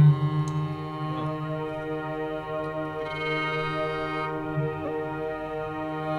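A fusion ensemble holding one long sustained chord, keyboard pad tones with a bowed cello, steady and unchanging in pitch.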